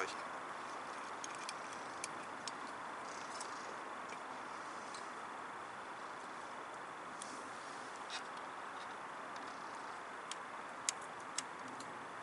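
Small stainless wood-gasifier camp stove burning with a steady rush of flame, with scattered sharp crackles of burning wood at irregular moments.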